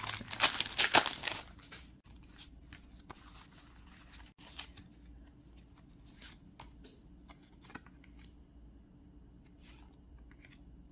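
Foil booster-pack wrapper being torn open and crinkling, loud for about the first second and a half. After that come faint, scattered clicks and rustles of trading cards being handled and slid against each other.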